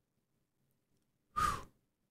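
A man's single short sigh about a second and a half in, a breathy exhale after near silence, as he catches his breath.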